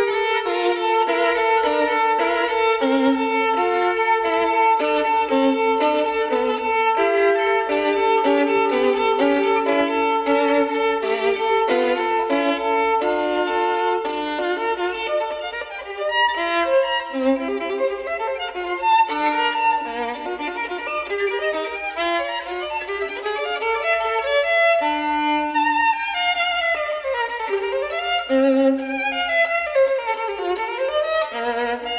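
Solo violin played with the bow. Long held notes in the first half give way to quicker, shifting phrases, with fast sweeping runs up and down near the end.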